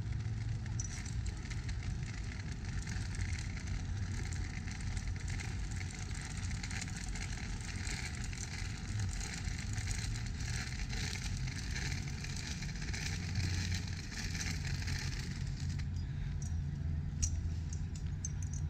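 Steady outdoor background of a city park: a low, constant rumble of road traffic under a soft hiss, with a few faint clicks near the end.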